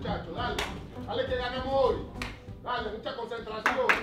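Three sharp hand claps among men's voices geeing each other up, over background music.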